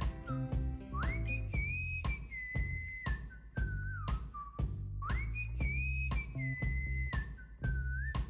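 Background music: a whistle-like lead melody that slides up and then steps down, over a steady beat and bass, the same phrase coming round again about every four seconds.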